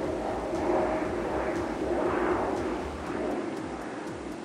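A vehicle passing on the road: a broad rumble that swells about two seconds in and fades away near the end.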